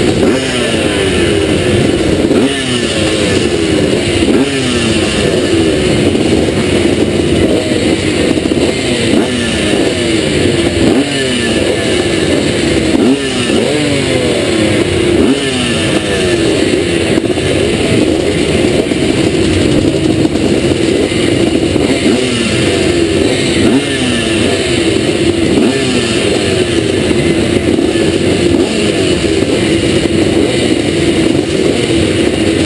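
A pack of vintage twinshock motocross motorcycles idling and revving together. Throttles are blipped again and again, so rising and falling revs overlap all the time.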